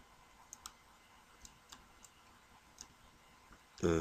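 A few faint computer mouse clicks, about five short ones spread unevenly over three seconds, over quiet room tone.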